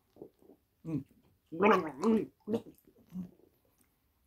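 A man gargling and gurgling a mouthful of water in his throat without swallowing it, in a run of short wavering gurgles, the longest and loudest about halfway through.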